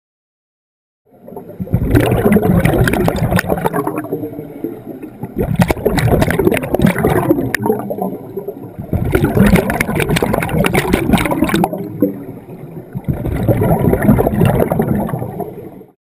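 Underwater bubbles from a scuba diver exhaling through a regulator: four bursts of gurgling, each lasting about three seconds, with quieter pauses between them. The first starts about a second in.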